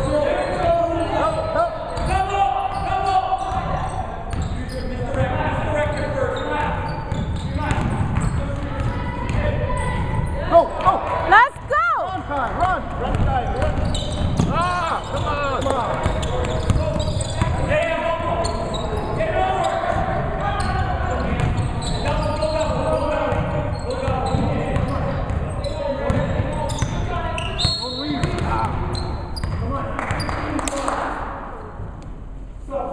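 Basketball game in a large gymnasium: indistinct voices of players and onlookers echo through the hall, while a ball is dribbled on the hardwood floor. A brief, louder gliding squeal comes about twelve seconds in.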